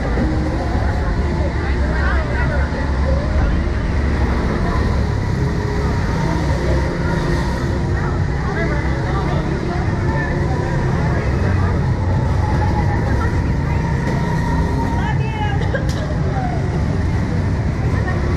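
Steady low rumbling noise with indistinct voices mixed in.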